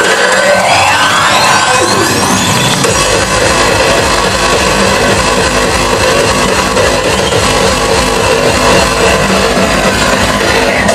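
Hardcore electronic dance music played loud over a club sound system. A rising sweep climbs over the first two to three seconds with the bass cut out, then a fast, heavy kick drum comes in about three seconds in and keeps going.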